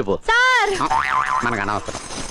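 A comic 'boing' sound effect: a high, rising-then-falling tone followed by a quick wobbling warble, lasting about a second.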